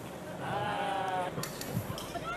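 A single high, drawn-out, bleat-like cry lasting about a second, starting about half a second in, followed by a brief hiss.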